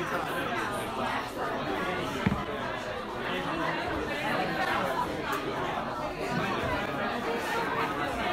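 Several people talking and laughing at once, too overlapped for any words to be made out, with one brief thump about two seconds in.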